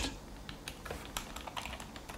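Keys tapped on a computer keyboard, a scatter of faint light clicks as text is typed and deleted.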